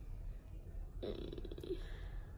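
A short, low, croaky sound from a person's throat about a second in, lasting under a second.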